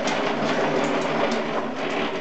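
Two children's plastic tricycles rolling fast across the floor, their wheels giving a steady rattling rumble with many small clicks.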